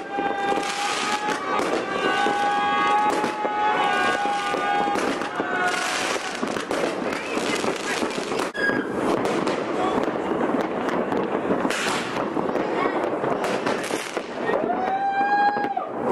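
Fireworks going off over a city: a continuous dense crackle of bangs and pops. Long held calls from people rise over it in the first few seconds and again near the end.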